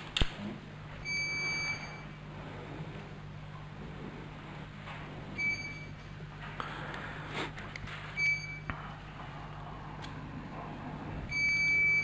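Four short electronic beeps, each one a single pitched tone, a few seconds apart, sounding while a council vote is being cast electronically. A low steady hum sits underneath.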